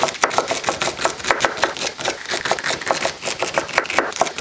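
A kitchen knife chopping vegetables on a cutting board: a fast, even run of sharp taps, about five or six a second.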